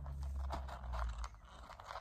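Faint crunching and chewing: a small child eating, with a low rumble in the first second or so.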